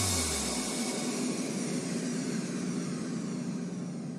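A steady airy rushing noise with a faint low hum, slowly fading out, like a jet-like transition sound effect laid under an edit.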